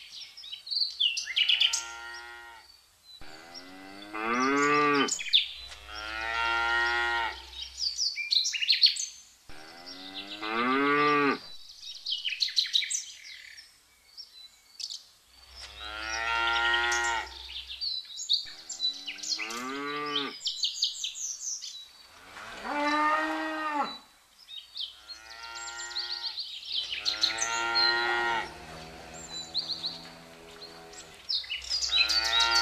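Cows mooing, one long drawn-out call every few seconds, each rising and falling in pitch, with a few short bird chirps between the calls.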